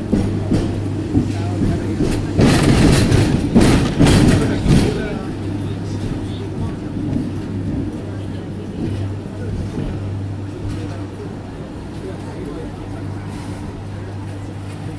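Hong Kong double-decker electric tram running along the street, heard from on board the upper deck: a steady low hum with a louder rattling, clattering stretch from about two to five seconds in.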